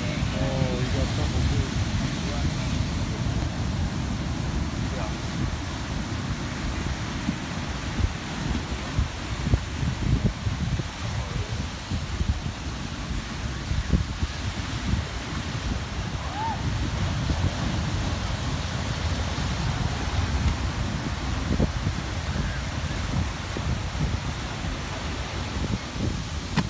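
Heavy ocean surf breaking and washing over a rocky shoreline as a continuous rush, with wind buffeting the microphone in uneven low gusts.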